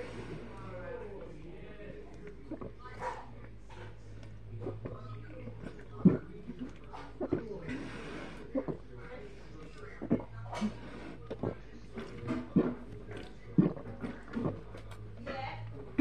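A person gulping carbonated water from a can: irregular swallows and small throat noises, with a short breath about halfway through.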